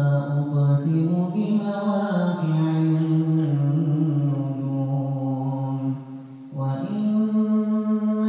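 A man's voice reciting the Quran in a slow melodic chant, holding long notes that slide between pitches. He breaks for breath about six seconds in and comes back in on a higher held note.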